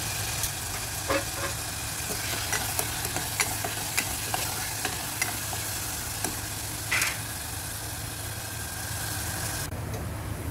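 Beef with garlic and onion sizzling in a pot while a spatula stirs it, knocking and scraping against the pot at irregular intervals, with one louder scrape near the end. A steady low hum runs underneath.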